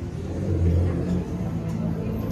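Music starting over a sound system: low held bass notes swell in about half a second in and settle into sustained tones, over the murmur of guests.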